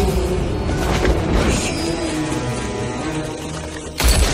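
Dramatic film-trailer score with a dense low rumble underneath and a sharp hit about a second in.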